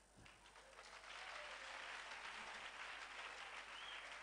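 Faint applause from a congregation, building over the first second and then holding steady.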